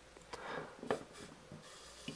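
Faint scraping and a light click from a 1:32 scale model bale wrapper's lifting arm, driven by a small planetary gear motor at low voltage, as it raises a plastic round bale.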